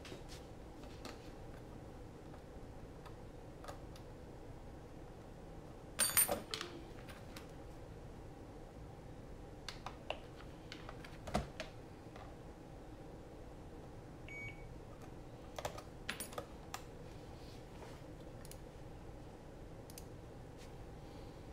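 Scattered clicks and light taps from handling a FrSky X9 Lite radio transmitter and computer at a desk, the loudest about six seconds in, with a short faint beep about fourteen seconds in.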